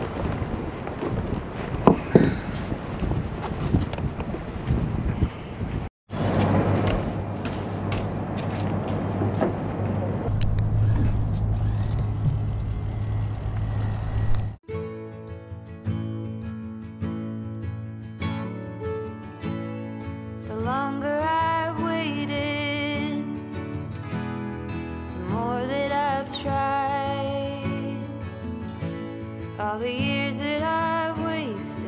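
Wind rushing over the microphone on an open boat deck, with scattered clicks and knocks. About halfway through, a song starts, and a singer comes in a few seconds later.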